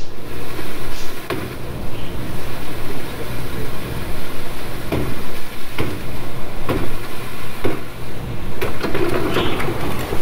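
Water gushing out through a breach in an above-ground pool's wall onto a plastic tarp, with several sharp knocks of a long-handled tool striking the wall, about one a second in the second half.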